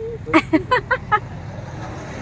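Steady low rumble of a motor vehicle on the road, with a few short, high-pitched vocal sounds in the first second.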